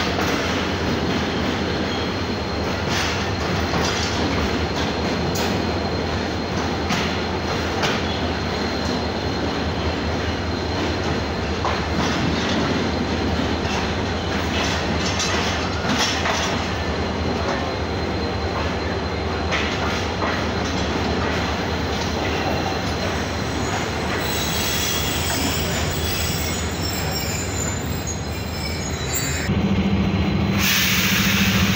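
Mehran Express passenger train rolling past along a station platform: a steady rumble of wheels on rail with frequent irregular clicks over rail joints and a thin, steady high-pitched wheel squeal. Right at the end the sound grows louder, with a low hum, as the diesel locomotive comes alongside.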